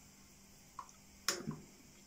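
Cockatiel bathing in a small water dish: a few brief splashes and flicks of water between quiet stretches, the sharpest about a second and a quarter in.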